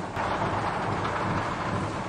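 Steady background noise of an air-conditioner assembly plant floor: machinery running, heard as an even rumble and hiss with no distinct events.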